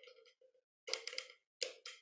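A few sharp electrical snaps from a 60 kV DC voltage multiplier being switched on: separate cracks with a quick cluster about a second in and another pair near the end, the supply arcing rather than holding a steady charge.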